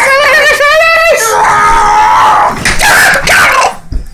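A man screaming at the top of his voice without words: a long cry with a rapidly wavering pitch, a second long high cry, then a shorter, rougher shout that breaks off near the end.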